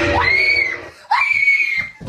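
Two loud, high screams at a jump scare on a computer screen, each just under a second long, the second starting right after the first.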